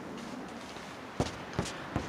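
Low, steady background hiss with two brief soft knocks, one a little after a second in and another about half a second later.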